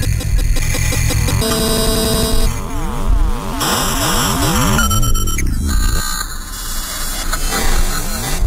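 Glitchy electronic music played live on a DJ controller and mixer: sweeping tones glide up and down over a low pulse, and held tones cut abruptly from one to the next.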